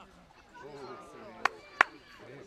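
Two sharp smacks about a third of a second apart, over faint background voices.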